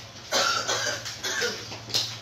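A person coughing several times in a row, starting about a third of a second in, over a low steady hum.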